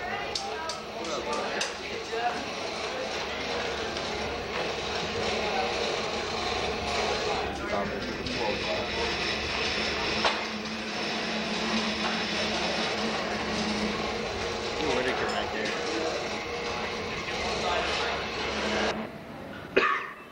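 A busy shop room full of overlapping, indistinct voices, with scattered knocks and clatter from work at the benches over a steady low hum. It all cuts off shortly before the end.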